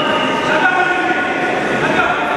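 Crowd noise in a large, echoing sports hall: many voices talking and shouting at once, with no pauses.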